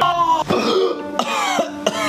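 A man coughing and clearing his throat in a hoarse voice, a put-on cough of someone acting ill.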